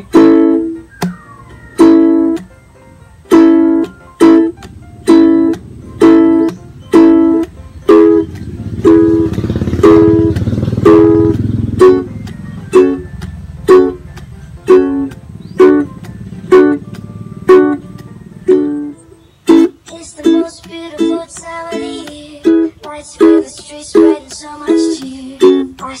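Ukulele strummed in a steady repeating pattern: a ringing up-strum on the chord, a muted dead-string stroke, then a percussive tap on the strings.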